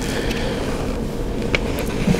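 Steady background noise of the room: an even hiss with a faint low hum, and a faint tick or two of paper handling about one and a half seconds in.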